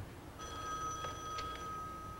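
Corded desk telephone ringing: one ring of about a second, starting about half a second in.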